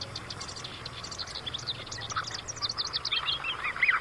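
Small birds chirping, with many short, quickly repeated high calls.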